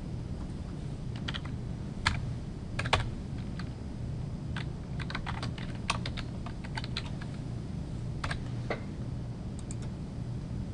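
Typing on a computer keyboard: irregular keystroke clicks, sparse at first and then a quicker run in the middle, over a steady low hum.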